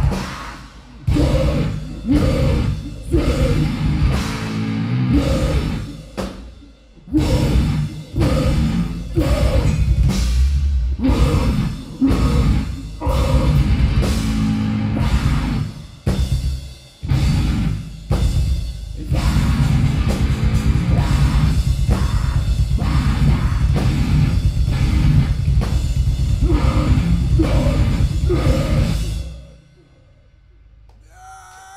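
Heavy metal band playing live with distorted guitars, bass and drum kit. The first two-thirds are stop-start, chugging hits broken by short gaps. The band then plays on without a break before stopping suddenly just before the end.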